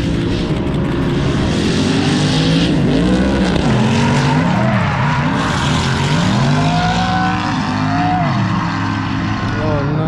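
Drift cars' engines revving up and falling back over and over, several at once and overlapping, with a steady hiss over the top.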